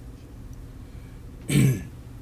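A person clearing their throat once, briefly and loudly, about one and a half seconds in, over a low steady room hum.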